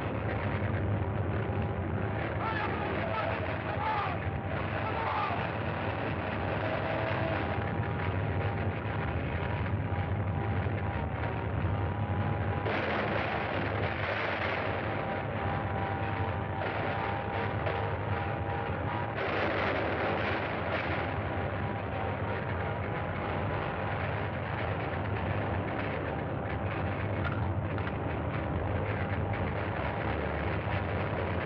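Continuous loud rattling rumble of film sound effects, with a thin steady whine held through it. It swells twice, about thirteen and twenty seconds in.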